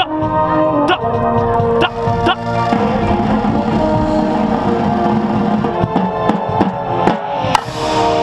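Drum corps ensemble playing: sustained brass chords with scattered stick strikes on marching tenor drums with Remo heads, close to the microphone.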